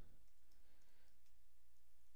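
A few faint computer keyboard keystrokes, scattered clicks about half a second in and again near the end, over a steady low hum.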